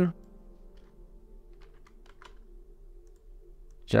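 A few faint, quick computer clicks, about four of them between one and a half and two and a half seconds in, over a low steady background hum.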